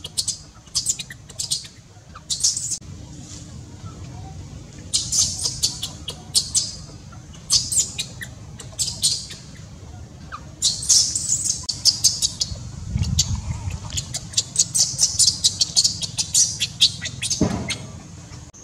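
Baby macaque giving high-pitched, squeaky cries in quick repeated bursts, the crying of an upset infant. There is a brief low rumble about two-thirds of the way through and a single knock near the end.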